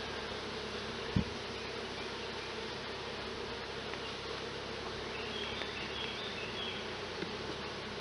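Honey bees buzzing steadily around an open hive, a colony disturbed by the inspection. A single short knock about a second in.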